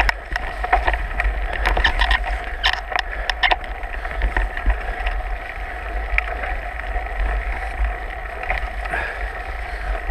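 Mountain bike ridden along a dirt singletrack: tyre and drivetrain noise with the bike rattling, and a run of sharp clatters between about two and four seconds in as it goes over rough ground. A steady low rumble lies under it all.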